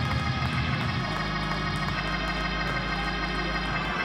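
Organ playing held chords, with the bass notes changing about a second in and again near the end.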